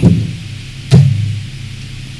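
A single sharp thump about a second in, picked up close on a headset microphone, over a steady low hum.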